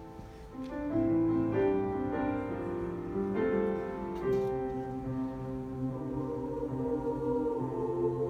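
Mixed choir singing sustained chords with piano accompaniment; the voices come in fuller and louder about a second in.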